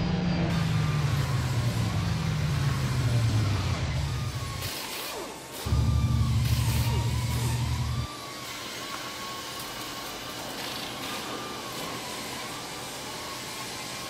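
Ferrari F430's V8 engine: its revs fall steadily for about four seconds and fade. About a second later it runs loud and steady for two seconds, then cuts off suddenly. A quieter background with a wavering tone and a few clicks follows.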